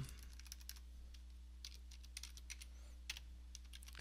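Faint keystrokes on a computer keyboard: scattered, irregular key clicks over a steady low electrical hum.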